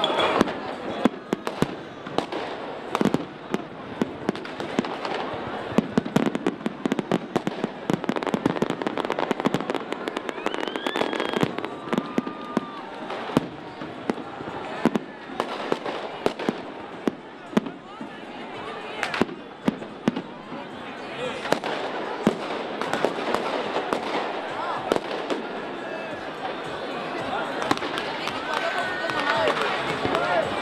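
Aerial fireworks display: a rapid, irregular run of sharp bangs and crackles from shells bursting overhead, with voices from the crowd underneath. The bangs thin out in the last third as the display ends.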